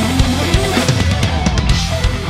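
Hard rock mix playing back: a full drum kit with kick and snare hits over sustained bass and distorted electric guitars. A lead guitar runs through a parallel split of delay, plate reverb and flanger.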